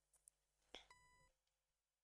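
Near silence broken by a faint click and then a short electronic beep about a second in.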